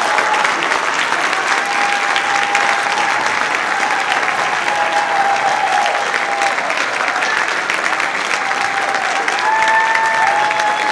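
Audience applauding steadily after the band finishes its piece, with a few long, held calls from the crowd over the clapping.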